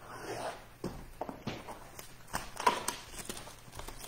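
A cardboard Panini Prizm baseball-card retail box being handled and opened by hand: a brief scrape of cardboard, then irregular light clicks and knocks of the box and its flaps, the sharpest a little past the middle.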